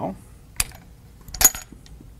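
Metal clicks from the action of an antique repeating gun with a rotating magazine as its hammer is cocked back, bringing a shell into place ready to fire: one click about half a second in, a louder one about a second and a half in, then a few faint ticks.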